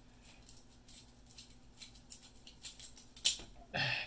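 Small scattered clicks and creaks from a plastic battery-cell holder being pried apart by hand, with one sharp snap a little over three seconds in as the end piece comes free.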